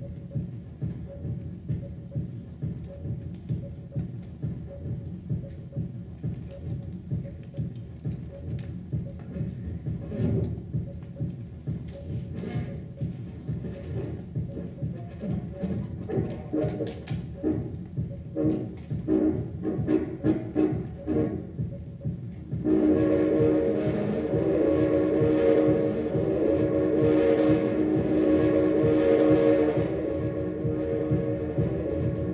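Looped live music from a homemade analog looper that records to and plays back from magnetic discs on a modified turntable. A repeating low pulse runs throughout, with scattered clicks and short strokes layered over it from about a third of the way in. A loud, sustained, chord-like drone enters suddenly near the end.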